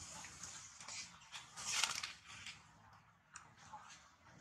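Soft rustling and clicking noises, with a louder rustling burst about two seconds in.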